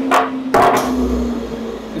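A mahogany board knocking down onto a wooden work surface: a light knock, then a louder one about half a second in. A steady hum runs underneath and fades out near the end.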